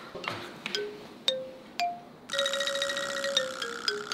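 Comic background music cue of sparse mallet-like plinking notes. About halfway in a held note with a bright ticking shimmer enters, then the notes step down in pitch near the end, an edited-in cue for an awkward silence.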